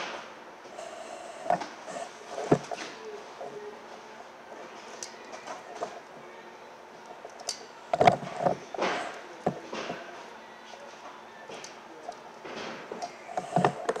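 Two wires being joined in one crimp terminal by hand at a workbench: scattered small clicks, knocks and rustles of wire, terminal and hand crimping tool, with the loudest cluster of knocks about eight seconds in.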